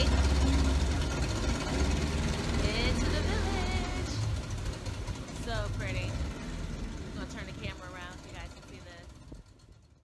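A motorboat's engine running, with water and wind noise and brief faint voices, fading out steadily to near silence by the end.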